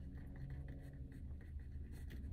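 Faint scratching of handwriting on paper, a run of short strokes, over a low steady hum.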